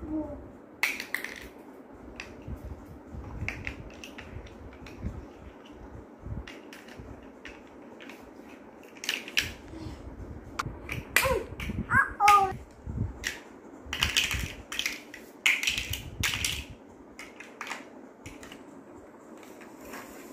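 Large plastic toy building blocks clicking and clattering as they are handled and pressed together, a scatter of sharp irregular clicks that are busiest in the second half. A small child gives a short vocal sound about halfway through.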